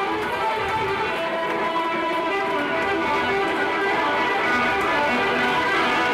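Blues music led by an electric guitar, played steadily.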